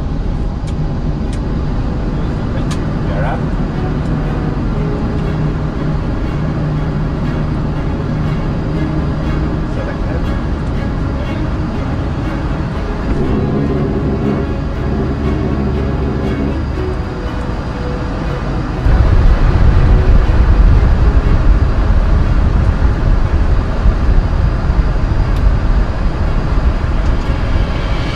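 Cockpit noise of an Embraer E195-E2 at takeoff thrust, its Pratt & Whitney PW1900G geared turbofans and the airflow heard through the end of the takeoff roll and the climb-out: a steady noise with low hum tones. About two-thirds of the way in a deeper rumble comes in and the sound gets clearly louder.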